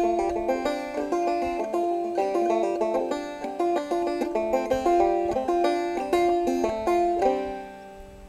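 Solo banjo playing a brisk old-time tune in quick plucked notes, ending on a final chord about seven seconds in that rings out and fades.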